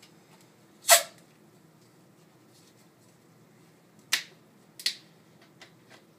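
Plastic soda bottles being handled on a countertop: three short, sharp crackles, the loudest about a second in and two fainter ones near four and five seconds.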